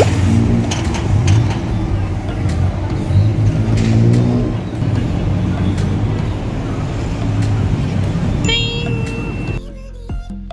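Busy outdoor noise: people's voices over a steady low rumble like road traffic. A short ringing tone sounds near the end.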